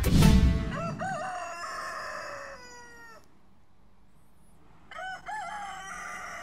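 A rooster crowing twice, each crow about two seconds long with a quiet gap between. The theme music ends on a final hit just before the first crow.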